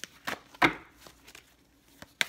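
Tarot cards being shuffled by hand, a few sharp snaps of cards striking each other, the loudest a little over half a second in, as cards jump out of the deck.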